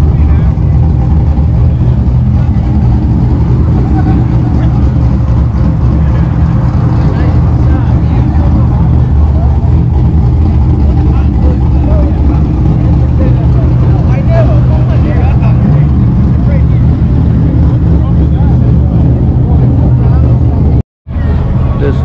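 A car engine idling steadily close by, a low even rumble, with voices from the crowd in the background. The sound drops out completely for a moment about a second before the end.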